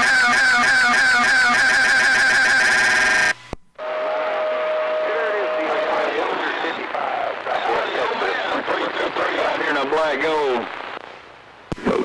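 CB radio receiver audio. A pitched, warbling transmission cuts off abruptly about three seconds in. Another station then keys up with a steady whistle for about two seconds over garbled, unintelligible voices that fade out shortly before the end.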